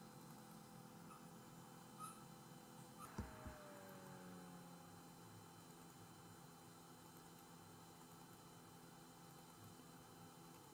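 Near silence: a faint steady electrical hum of room tone, with a few soft clicks about two and three seconds in.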